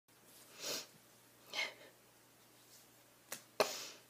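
A woman's audible breathing through the nose: two breaths about a second apart, a small click, then a sharp, sudden exhale that fades away near the end.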